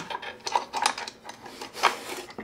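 Aluminium right-angle corner clamp rubbing and clicking against the corner of a wooden tray as it is slid on and tightened, a string of short scrapes with the loudest near the end.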